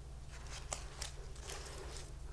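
Faint rustling and a few light ticks as potted houseplants and their leaves are handled, over a low steady hum.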